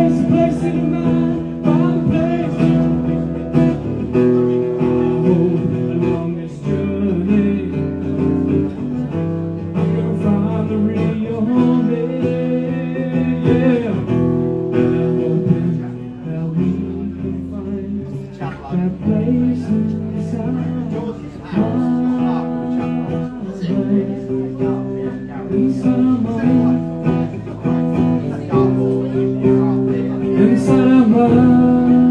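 Live song on an amplified acoustic guitar: strummed chords changing every second or two, with a man singing over it at times.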